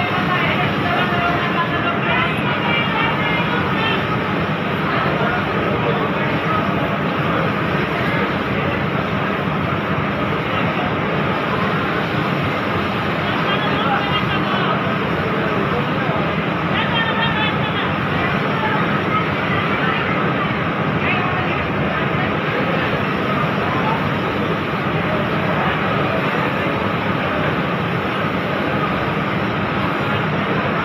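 Steady, unbroken machine noise of a garment factory's ironing floor, with indistinct voices of workers in the background.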